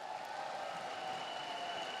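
Audience applause in a large hall: a steady, even spread of clapping, with faint held tones underneath from about half a second in.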